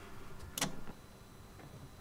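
Quiet room tone with one short, sharp click or knock about half a second in.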